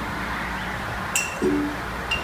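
A single short, high-pitched clink about a second in, over a steady room hiss, with a brief low murmur of a voice just after it.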